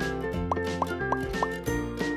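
Cheerful background music with four quick rising 'bloop' pop sound effects about a third of a second apart, one for each glitter stair block popping into place.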